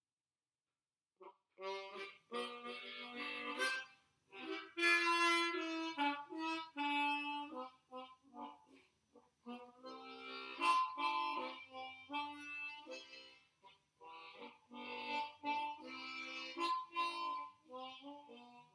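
Harmonica playing a tune in chords and single notes, starting after about a second of silence.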